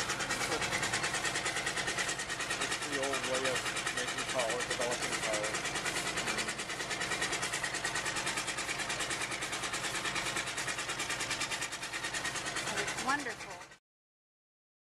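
1916 Waterloo steam traction engine running with a steady, rapid rhythmic beat, and a few brief voices in the background. The sound cuts off suddenly just before the end.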